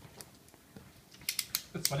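Slider of a snap-off-blade utility knife ratcheting the blade out: a quick run of five or six sharp clicks starting about a second in.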